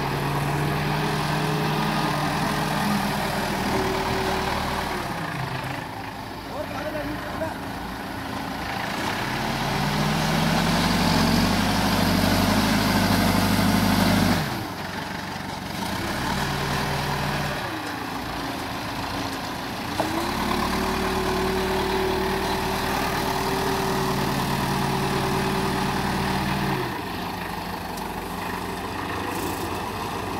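Case 770 backhoe loader's diesel engine running under load while it loads soil, revving up and down with the work. Its pitch climbs about a third of the way in and drops off suddenly near halfway, then it runs higher and steady again through most of the later part before settling back.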